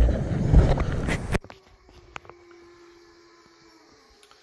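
Wind rushing over the microphone of a bass boat running across open water, cut off suddenly about a second and a half in. It gives way to a quiet room with a faint steady hum and a few small clicks.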